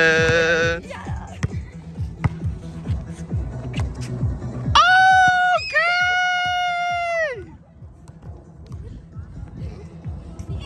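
A girl laughs at the start, then a girl gives a long, loud, held cry on one pitch, in two breaths with a short break, starting about five seconds in, over background music.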